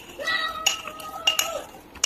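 A metal spoon clinks a few times against a glass dish or bowl with a short ring. Under the clinks, a high-pitched voice sound is held for about a second and a half.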